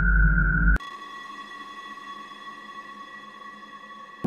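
A loud low rumble with a steady high tone cuts off abruptly about a second in. It gives way to a quieter electronic drone of sustained, unwavering pure tones.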